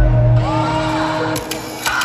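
Hip-hop beat played live over a concert sound system, with a heavy sustained bass that drops out about one and a half seconds in.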